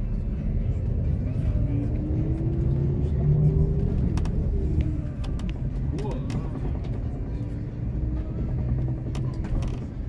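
Cabin rumble of a moving road vehicle heard from inside. An engine note rises in pitch from about two to five seconds in as the vehicle picks up speed, with a few sharp clicks scattered through.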